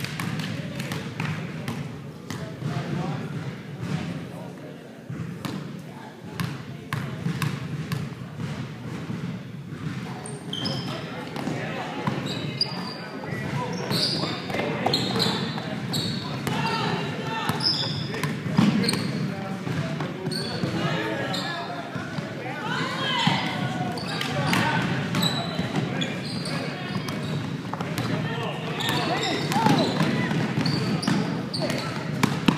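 Basketball bouncing on a hardwood gym floor, echoing in a large hall. From about a third of the way in, sneakers squeak on the hardwood in short high chirps as players run, with indistinct voices calling out.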